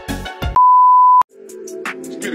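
A loud, steady, pure electronic censor bleep, of the kind laid over a swear word, starting about half a second in and cutting off abruptly after about two-thirds of a second. Background music with a beat plays before it, and a different music track starts after it.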